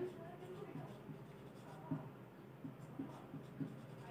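Marker pen writing on a whiteboard: faint, short strokes, several in quick succession in the second half.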